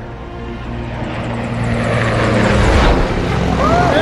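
Film soundtrack mix: sustained low orchestral score notes under a rushing noise that grows steadily louder. A voice cries out near the end.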